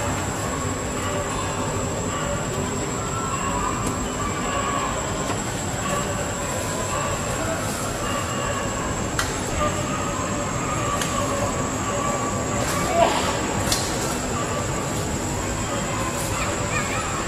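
Steady outdoor ambience: a continuous high-pitched whine over a noisy drone, with a few faint clicks.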